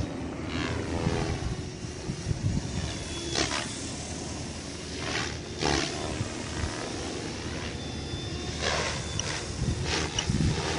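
Electric RC helicopter, a stretched MSHeli Protos with 470mm main blades, flying aerobatics: the spinning rotor blades give several loud swells of whooshing as it flips and manoeuvres, over a steady low rumble.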